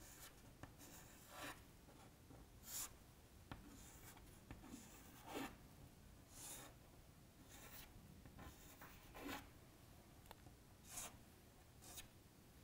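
Chalk scratching on a chalkboard as lines and letters are drawn: faint, short separate strokes, roughly one a second.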